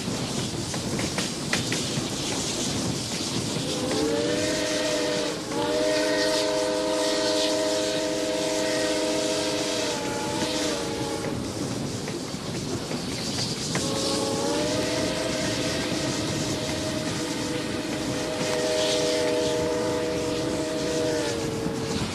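Reading 2102, a T-1 class 4-8-4 steam locomotive, blowing its chime whistle in two long blasts, each a chord of several tones that slides up as the whistle opens and sags down as it closes. A steady rushing noise of the running train carries on underneath.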